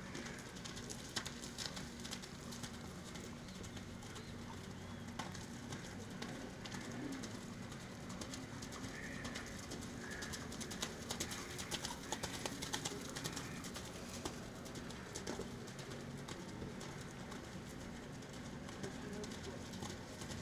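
Faint hoofbeats of a Crioulo horse loping through wet, muddy arena ground: irregular soft thuds and splashes, thickest about halfway through, over a steady outdoor background.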